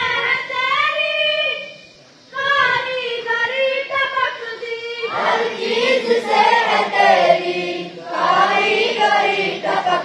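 A group of schoolboys chanting a morning prayer together in a sung recitation, with a short pause about two seconds in and the sound growing fuller from about five seconds on.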